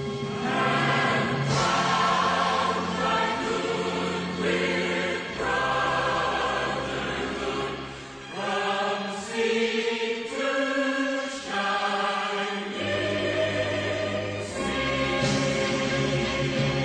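Choral music: a choir singing slow, held chords that change every second or two.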